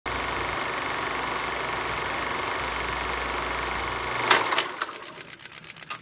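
Film projector running with a steady fast mechanical clatter. About four seconds in it breaks into a short loud burst, then quieter irregular clicks and pops.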